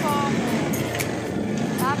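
People talking on a moving motorcycle, with the engine running steadily and road noise under the voices.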